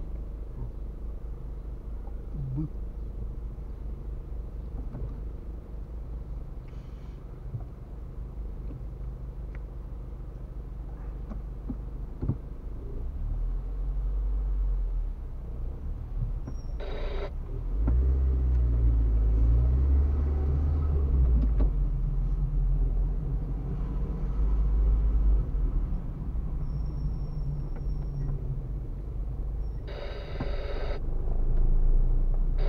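Car's engine and road noise heard from inside the cabin in stop-and-go traffic: a steady low rumble that grows louder as the car moves off after the middle, with a brief noise burst shortly before it swells and a short high beep near the end.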